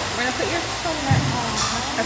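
Steady blowing noise of a salon hair dryer running, with faint voices talking over it.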